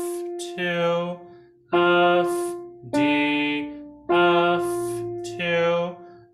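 Piano playing a slow melody one note at a time, a new note about every 1.2 seconds, each struck and fading. A man's voice sings the note names and counts along with it.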